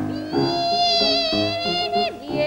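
A soprano voice holds one long high note with a light vibrato, starting about a third of a second in, over repeated piano chords.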